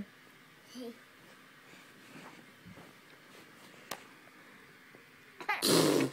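Mostly quiet, then near the end a short, loud, spluttering blast of a person blowing a raspberry to set off a baby's laughter. A brief faint baby vocal sounds about a second in.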